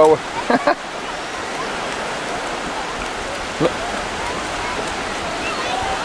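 Steady rushing wash of sea surf on a beach, with faint distant voices.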